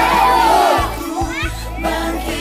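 A group of children's voices singing together over backing music, fading about a second in to scattered children's voices.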